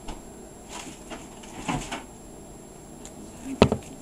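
Quiet handling of a glued felt strip on a wooden tabletop, then one sharp knock on the table near the end.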